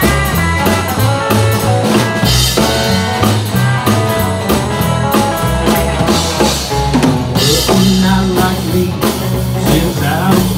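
Live band playing an instrumental break: electric guitar picking a lead line over bass and a drum kit with a steady beat.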